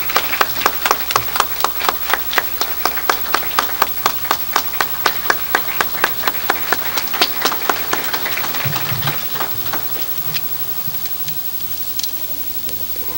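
Audience clapping in unison, a steady beat of about four claps a second, which loosens and dies away about nine to ten seconds in.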